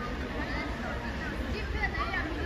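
Indistinct voices of an audience chattering in a large hall over a steady low rumble, with no clear single speaker.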